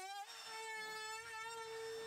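Electric router fitted with a bearing-guided flush-trim bit, running with a steady whine as it trims a plywood edge flush.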